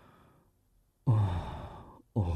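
A man's voiced sigh about a second in, starting strong and falling in pitch as it fades away, after a faint breath at the start. It is an acted sigh in a spoken storytelling performance.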